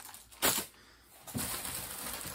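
A bag rustling as it is rummaged through: a short rustle about half a second in, a brief quiet, then rustling again from just past the middle.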